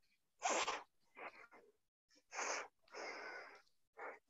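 A person's breathy, unvoiced sounds close to the microphone: four short noisy bursts, the first and loudest about half a second in.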